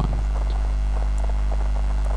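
Steady, even electrical mains hum on the microphone recording, with a stack of low tones.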